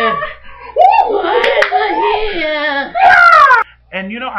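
Loud wordless wailing and shouting in mock crying, ending in a long falling wail that cuts off sharply near the end.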